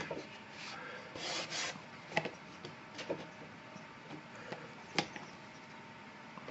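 Card picture mount being handled over a watercolour painting: faint rubbing and scraping of card against paper, with a few small taps, the sharpest near the end.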